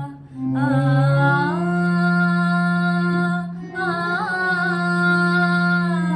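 A girl singing solo in long, slow held notes. She breaks briefly near the start and again about 3.5 s in, and the pitch steps up and bends in a small ornament in between.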